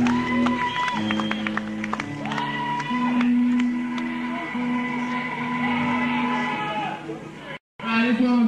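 Punk rock band playing live on electric guitars, bass and drums, with long held notes over drum hits, on an old audience recording. The sound cuts out suddenly for a moment near the end, a break in the tape.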